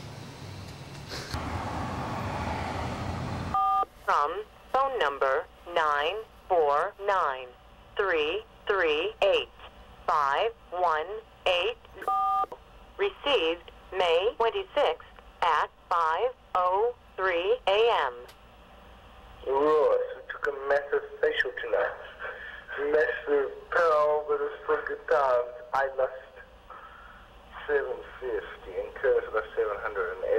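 A voice heard thin and narrow, as through a telephone or radio, after a few seconds of rushing noise. A short two-tone beep sounds twice, about four seconds in and again about twelve seconds in.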